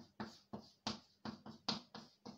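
Chalk tapping and scraping on a blackboard as characters are written, about eight short, sharp strokes in two seconds.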